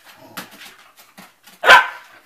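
A dog barks once, loud and sharp, near the end, over faint scuffling of two dogs play-wrestling.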